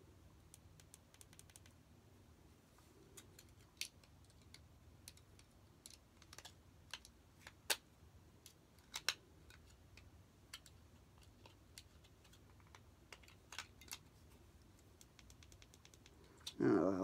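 Faint, irregular clicks and taps of hands handling small plastic parts and wires of a battery-powered animated Christmas figure, with a few sharper clicks about halfway in.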